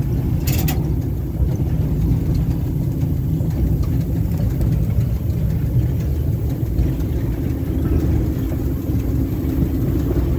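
Steady low rumble of an electric train running along the track, heard from inside the driver's cab. A brief crackle sounds just after the start.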